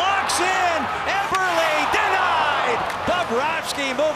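Excited play-by-play commentary over a steady crowd murmur in a hockey arena, with a few sharp knocks of stick, puck or boards during a breakaway.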